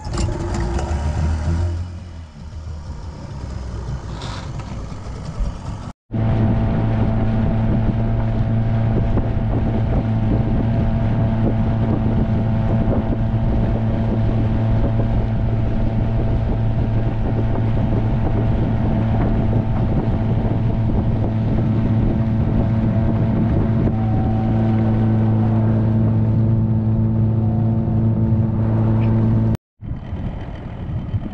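A small boat's motor running at a steady speed, humming evenly. The sound breaks off sharply about six seconds in and picks up again at once.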